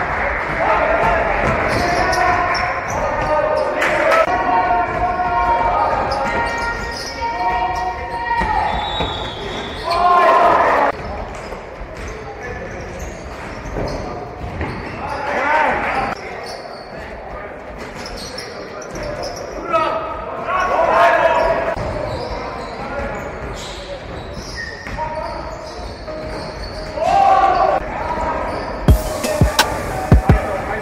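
Indoor basketball game sounds: a ball bouncing on a wooden gym floor and players' voices echoing in a large hall, with a few sharp knocks near the end.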